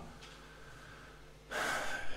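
A man's quick, audible in-breath close to the microphone near the end of a quiet pause in his speech.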